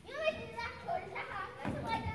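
Children's high voices calling out and talking, the first call rising in pitch at the start.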